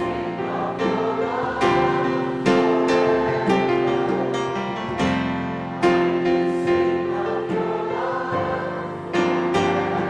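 Worship song: a group of voices singing with piano accompaniment, chords struck a little more than once a second.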